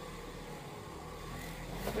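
Electric car buffer with a soft pad running steadily, its motor humming as the pad is worked against the leg.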